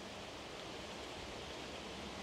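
Faint steady outdoor background noise, an even hiss with no distinct sounds in it.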